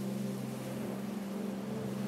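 A steady low drone of several sustained tones, a soft background music pad held without change.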